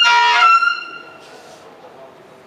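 A sudden, loud, shrill electronic squeal of several steady pitches at once, fading out within about a second.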